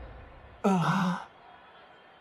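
A character's short, breathy vocal sound, like a sigh, lasting about half a second and coming a little over half a second in. A low rumble fades out before it.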